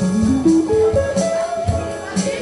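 Small jazz band playing a bossa nova, with an electric guitar playing a single-note line that climbs step by step over keyboard chords and drums.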